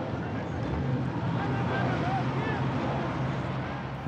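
The engine of a heavy armoured police vehicle, a Casspir, running steadily as it drives past, with faint voices in the background.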